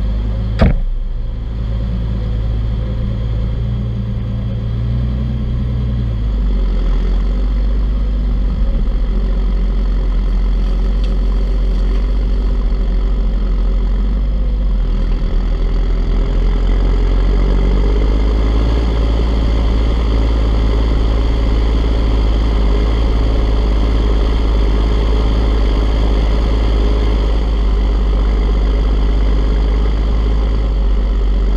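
Farm tractor's diesel engine running steadily close to the microphone, with one sharp knock under a second in. It gets louder about six seconds in and its note rises in the second half as it takes the load of the plough, black smoke coming from the exhaust.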